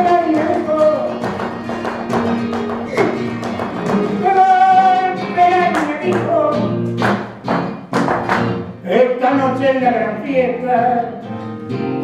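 Live flamenco: a voice singing long, wavering held notes over acoustic guitar, with a cluster of sharp percussive strikes about seven to eight seconds in.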